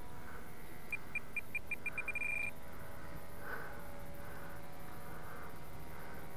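Radio-control transmitter trim beeps: a run of short high beeps that come faster and faster as the trim button is held, then merge into a short steady tone. Left trim is being added to correct a model plane that is badly out of trim.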